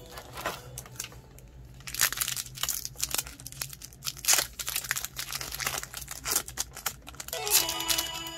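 Foil wrapper of a Pokémon trading-card booster pack crinkling and tearing open by hand, in a dense run of crackles. Background music comes back in near the end.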